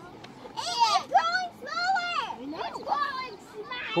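Children's excited voices: a run of short, high-pitched squeals and exclamations that rise and fall in pitch.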